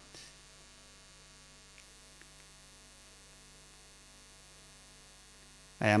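Faint, steady electrical mains hum from the microphone and sound system, with two faint clicks about two seconds in.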